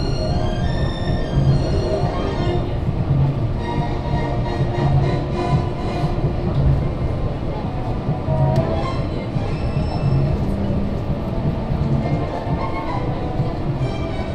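Music playing over the continuous running noise of the Disney Resort Line monorail moving along its track.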